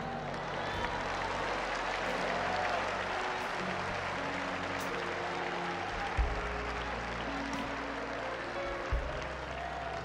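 A congregation applauding over sustained chords from the worship band, with deep bass notes coming in about six seconds in and again near the end.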